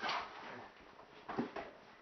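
A body taken down onto foam floor mats, landing with a dull thump about a second and a half in.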